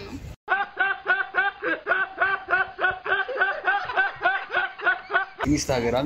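Laughter sound effect: one voice giggling in quick, even pulses, about four a second, for about five seconds. It starts and stops abruptly and sounds duller and thinner than the audio around it.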